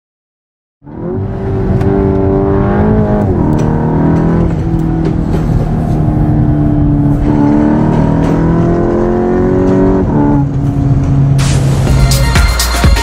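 Racing car engine sound at high revs, starting about a second in, its pitch dropping sharply twice and climbing slowly in between, as with gear changes. A whoosh rises near the end.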